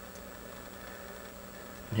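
Faint, steady low hum of a car cabin's background noise, with no distinct events.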